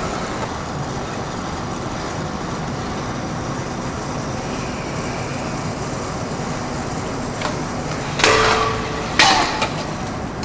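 Stunt scooter wheels rolling on concrete with a steady gritty noise. Near the end come two loud metal impacts about a second apart, each with a brief ringing, as the scooter hits the ground in a trick.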